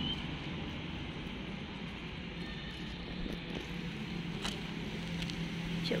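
Steady outdoor background noise with a low, even hum, and one brief click about four and a half seconds in.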